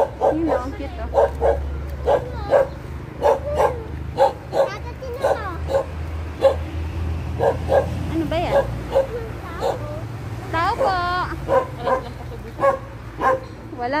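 A dog barking repeatedly, about twice a second, with a longer wavering yelp about eleven seconds in. A low steady rumble runs underneath.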